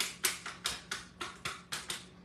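Kitchen tongs clacking open and shut in quick, even repeats, about four sharp clicks a second.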